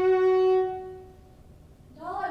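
Solo violin holding one long bowed note that fades away about a second in, closing the phrase. The rest is near-quiet room sound.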